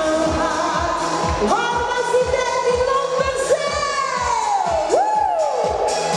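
Live schlager pop performance: a woman singing over a backing track with a steady kick-drum beat. Her voice holds long notes, with a long downward slide about four seconds in.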